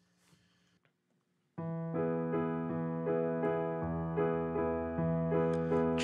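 Digital keyboard playing a slow introduction of sustained piano chords, starting about one and a half seconds in after near silence. The chords change every second or two, with a deeper bass note joining about halfway through.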